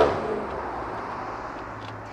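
Faint vehicle noise heard inside a car cabin, dying away over the first half second to a low steady hum.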